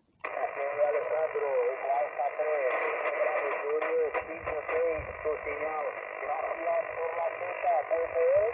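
A distant station's voice reply received over shortwave and played through a portable transceiver's speaker. It sounds narrow and tinny over steady static with a faint whistle. The heavy interference noise is blamed by the operator on a high-voltage power line below the summit.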